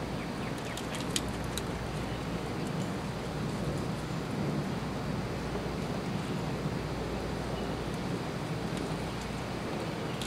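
Steady outdoor background noise with a low rumble, and a few faint clicks about a second in.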